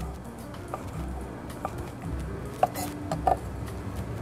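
A few separate knife taps on a wooden cutting board as cold cuts are sliced, over faint background music.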